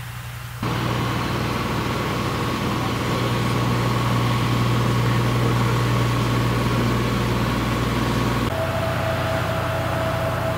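Steady engine hum from the vehicles of a Patriot air-defence battery, with a constant thin whine over it. The sound jumps in loudly about half a second in and changes abruptly near the end, where the whine drops lower in pitch.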